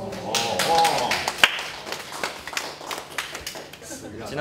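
Voices during the first second, then a small group clapping unevenly, with one sharp louder clap about one and a half seconds in.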